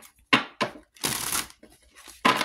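A deck of tarot cards shuffled by hand: two short bursts of card noise, then a longer one about a second in.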